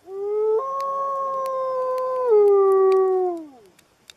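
A single long wolf howl: it steps up in pitch about half a second in, holds level, steps back down a little after two seconds, then slides down and fades out shortly before the end.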